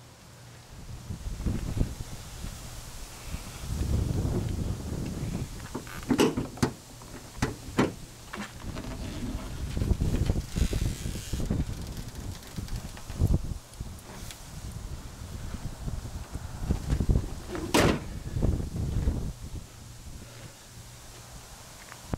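Wind gusting on the microphone, with several clunks and knocks; the sharpest comes about four-fifths of the way through, fitting the van's hood being shut.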